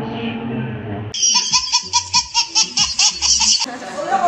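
A burst of laughter in quick, rhythmic 'ha' pulses, about five a second, cutting in suddenly about a second in and stopping abruptly near the end, brighter and clearer than the talk around it.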